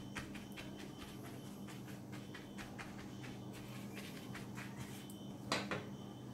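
Silicone pastry brush dabbing a melted butter-and-oil mix onto thin, crinkled phyllo sheets in a glass baking dish: faint, irregular soft crackles and taps, with one louder tap near the end, over a steady low hum.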